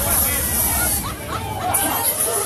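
Crowd chatter and voices in a packed bar over loud music whose steady bass beat drops out about halfway through.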